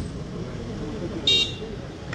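Street background of traffic noise and faint distant voices in a pause between sentences, with one short high-pitched beep about a second and a quarter in.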